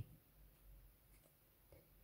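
Near silence: room tone in a small room, with only a few very faint small sounds.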